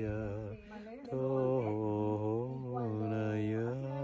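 A man chanting a mantra alone in long, held notes, stepping between a few low pitches, with a short breath about half a second in before the next phrase.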